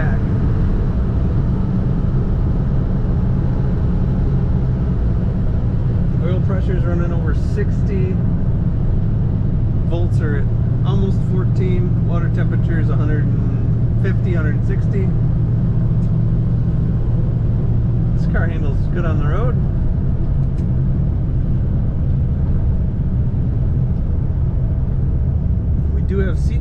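A 1939 Plymouth street rod's engine and road noise heard from inside the cabin while cruising on the highway: a loud, steady low drone.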